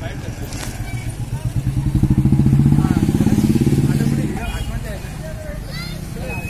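A motorcycle engine passing close by, growing louder to a peak about two to three seconds in and then fading away, amid street voices.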